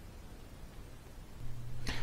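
Faint room tone with a low steady hum that drops out and comes back over the last half second, and a single sharp click just before the end.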